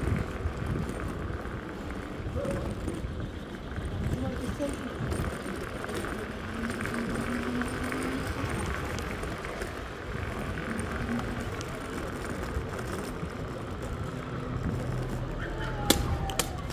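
SpeedSavage S11 electric scooter riding over a paving-stone street: steady rolling noise and rattle of the tyres and frame over the stones.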